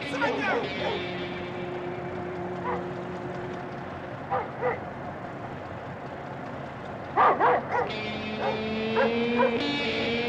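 A dog barking in short bursts: twice about four seconds in, then three louder barks close together around seven seconds. Sustained music notes play underneath.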